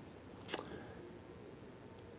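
A brief mouth noise about half a second in, in a pause between words, then faint room tone.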